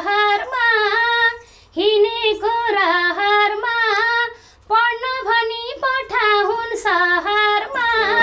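A woman singing a Nepali folk melody unaccompanied, in a high voice with wavering, ornamented notes. She breaks off twice briefly for breath.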